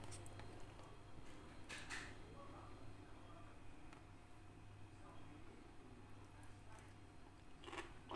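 Near silence: quiet room tone with a steady low hum. There is a faint click about two seconds in as a metal fork is lifted out of a plastic container, and faint sounds again near the end.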